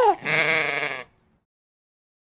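A sheep's bleat: one wavering 'baa' that cuts off abruptly about a second in.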